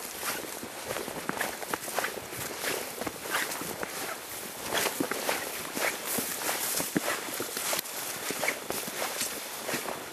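Footsteps brushing and crunching through tall grass and weeds, in an irregular patter, with fabric rustling close to the microphone.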